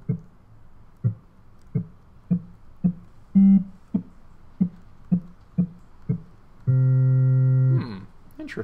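A sampled vibraphone note played from a keyboard through a Max/MSP groove~ sampler patch. About ten short notes at changing pitches each strike and die away quickly. Then, about seven seconds in, one held note sustains as a steady, unchanging tone for about a second and stops abruptly.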